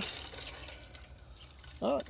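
Faint rattling of a homemade wooden cable-cam carriage rolling away along two taut ropes on its rollers. It was pushed too hard, and one front roller jumps off the rope, leaving the carriage hanging on its safety carabiner.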